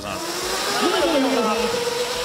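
Electric motor of a Sector67 'Fauxrarri' converted Power Wheels racing car whining as it drives off, a steady tone that rises slightly in pitch over a constant hiss.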